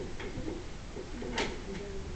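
Faint background voices talking, with a few sharp clicks; the loudest click comes about one and a half seconds in.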